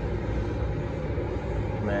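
Steady rumble and hiss of restaurant kitchen machinery running, with no distinct knocks or tones.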